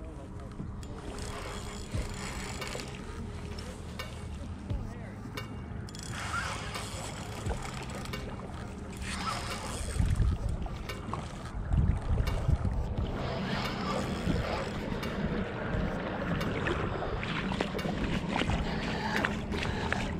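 Wind on the microphone and shallow water while a spinning reel is cranked to bring in a hooked fish, with louder irregular bursts about ten to thirteen seconds in.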